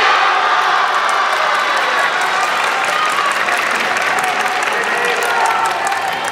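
Spectators and teammates clapping and shouting in reaction to a judo throw.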